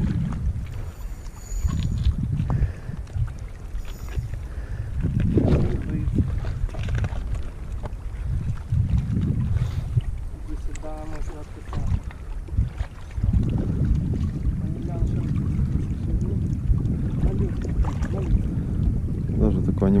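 Wind buffeting the microphone: a low, uneven rumble that swells and fades in gusts every few seconds.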